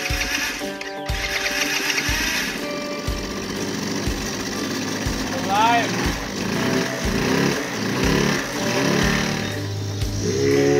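Background music with a steady beat, over the small engine of an E-Ton mini ATV running on its test-firing after a new carburetor was fitted. The engine's rapid rattle is clearest in the first couple of seconds.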